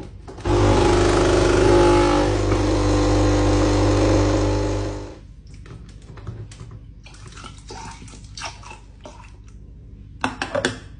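Nespresso capsule machine's pump buzzing loudly with a low hum for about four and a half seconds as it brews, then cutting off abruptly. Light clicks and taps follow as the milk frother beside it is handled.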